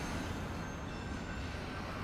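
Tail end of a long train passing: a steady rail rumble.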